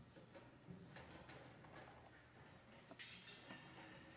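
Near silence in a hall: a faint low hum with scattered small knocks and rustles of musicians settling on stage, and a brief louder rustle about three seconds in.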